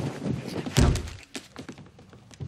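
Thuds of a struggle on a bed: one heavy thud about a second in, followed by a few faint light clicks.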